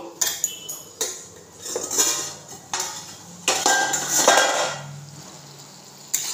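A stainless steel lid is taken off a kadhai, with several metal-on-metal clanks and scrapes; one clank about four seconds in rings briefly.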